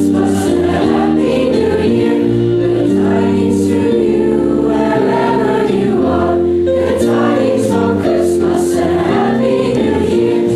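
Teenage choir singing in harmony, holding long chords that move every second or so.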